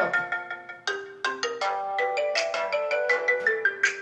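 A smartphone ringing with an incoming call: its ringtone plays a melody of quick, short, bell-like notes.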